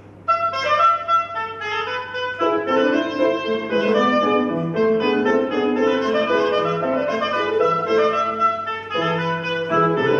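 A woodwind solo begins suddenly just after the start, with a flowing melody. Grand piano accompaniment joins about two seconds later, in classical chamber music for woodwind and piano.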